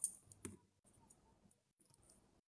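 Two faint, short clicks, one at the very start and another about half a second in, over a quiet room.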